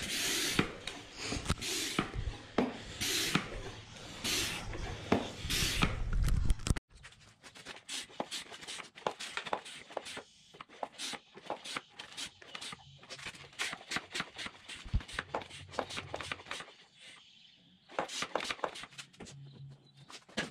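Hand-pumped vacuum fluid extractor being worked to suck engine oil up a jet ski's dipstick tube: a loud whooshing pump stroke about once a second, over a low hum. After about seven seconds the sound turns to quieter, rapid clicking and rattling from the pump.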